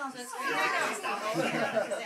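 Several people talking and calling out over one another at once, the voices getting louder about half a second in.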